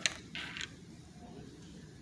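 Two short rustles of a glossy magazine page being handled as it is moved or turned, the second a little longer, both right at the start.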